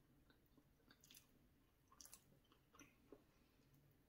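Near silence, with a few faint soft clicks of someone chewing a mouthful of pizza.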